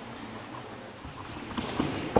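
Bare feet stepping and shuffling on a hardwood gym floor, making light scattered taps, with a sharper tap about one and a half seconds in.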